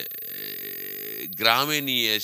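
A man's voice: one drawn-out, steady low vowel sound held for just over a second, then he goes back to talking.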